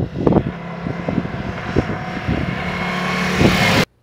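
Ducati Multistrada V4 motorcycle engine running at steady revs as the bike approaches, getting gradually louder with a growing hiss, then cutting off abruptly near the end.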